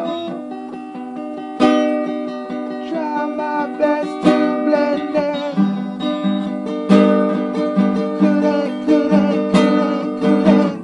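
Acoustic guitar playing a song, ringing notes with a strong strum about every two and a half seconds, and a voice singing "oh" about four seconds in.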